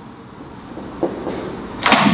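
Faint short scratching strokes of a felt-tip marker writing on flip-chart paper over quiet room tone, a few strokes in the second half.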